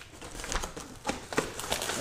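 Plastic shrink-wrap crinkling as scissors work at a shrink-wrapped cardboard box, with a few sharp clicks and crackles.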